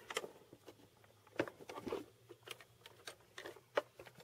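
Handling sounds of a wooden case being unlatched and its hinged lid swung open: scattered light clicks and knocks, with a few sharper knocks about a second and a half in and near the end.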